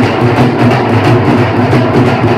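Four dhol drums, double-headed barrel drums struck with sticks, played together loudly in a fast, steady rhythm.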